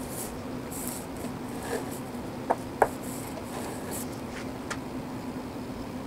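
Height gauge scriber scratching layout lines onto a dyed metal block, with the gauge base sliding on the bench and a few light metal clicks, over a steady low hum.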